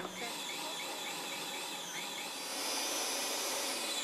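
Food processor with an S blade running steadily, blending the pesto ingredients. It gets slightly louder and brighter in the second half.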